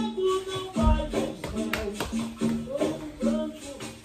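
Background capoeira music: a pitched instrument repeating short notes in a steady rhythm, over sharp percussive clicks.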